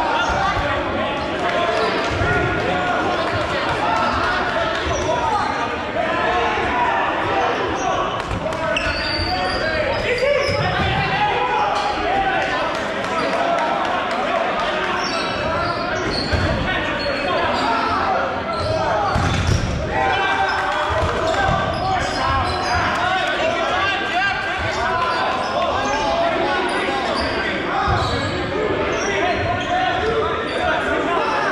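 Dodgeballs being thrown, bouncing and hitting on a hardwood gym floor, repeated thuds through a dodgeball game, with players' shouts and chatter echoing in the large gymnasium.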